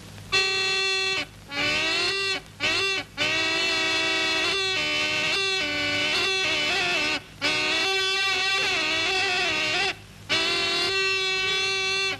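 A pungi, the snake charmer's gourd pipe, played with a reedy, wavering, gliding melody over a steady drone note. It starts about half a second in and breaks off a few times for breath.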